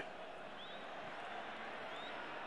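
Steady, even noise of a large stadium crowd during a football match, heard under a television broadcast.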